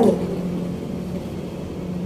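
Steady low background hum with a faint hiss.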